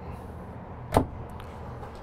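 A wooden kitchen cabinet being pushed shut, giving one sharp knock about a second in over a low, steady room background.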